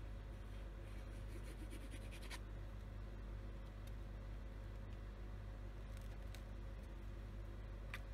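Faint handling of a plastic liquid-glue bottle and cardstock, with a few light clicks and taps as the bottle is set down and picked up and a photo is pressed onto the page. A steady low electrical hum runs underneath.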